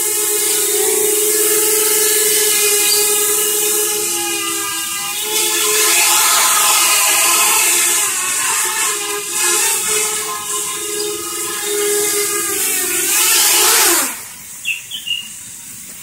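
Small quadcopter's four brushless motors and propellers hovering, a steady buzzing whine whose pitch wavers up and down as the throttle is corrected. About 14 seconds in the pitch falls and the sound drops sharply as it throttles down and sets down on the carpet, the props still turning.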